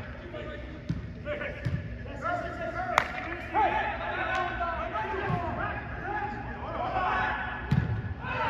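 Players' shouts echoing in a large indoor turf hall, with a soccer ball kicked sharply about three seconds in and several duller thumps of ball or feet on the turf.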